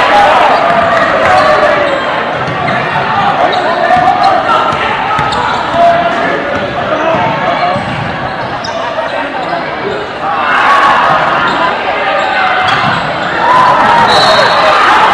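Spectators' voices at an indoor basketball game, many people talking and calling out at once, over the bounce of a basketball on the hardwood court. The crowd gets louder a little after ten seconds in.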